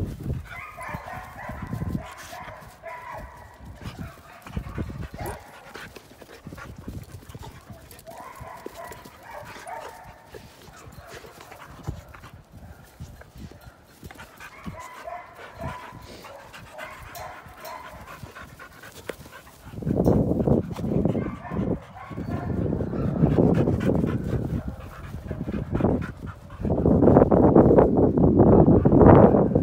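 Dogs playing rough together, making dog vocal sounds on and off. The last third is much louder and rougher, in three bursts, as they wrestle.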